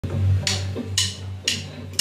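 Rock drummer counting in: sharp percussion ticks about two a second, four in all, over a steady low droning note.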